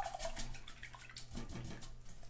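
Paint being worked by hand in a palette tray, giving a scatter of faint wet clicks and light taps.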